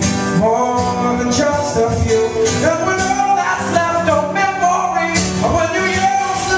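A steadily strummed acoustic guitar with a man singing over it.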